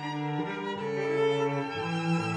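Classical music played by bowed strings: violin and cello holding sustained notes over a slow-moving bass line.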